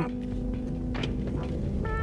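Car cabin noise from a car creeping along at low speed: a steady low rumble, with faint music holding a note for the first second and a half.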